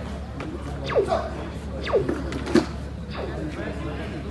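Spectators chattering in a large hall, cut by four short squeaks, each falling steeply in pitch, one about every second.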